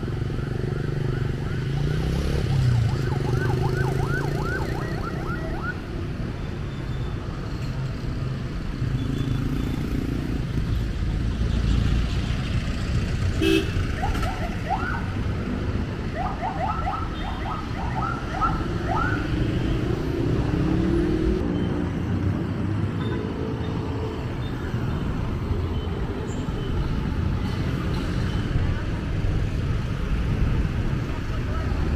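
Steady city street traffic noise from passing vehicles, including a jeepney. Rapid runs of short high chirps sound about two seconds in and again from about fourteen to nineteen seconds, with a single sharp click between them.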